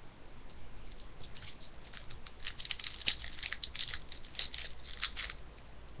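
Crinkling of a foil trading-card pack wrapper as cards are handled: a quick run of small crackles that starts about a second in and stops just after five seconds, the loudest about halfway through.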